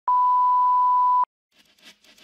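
A steady electronic test tone, one pure pitch with no wobble, starting abruptly and held for just over a second before cutting off sharply. It is the kind of reference tone that leads off a broadcast recording. After a brief silence, the faint start of the intro jingle comes in near the end.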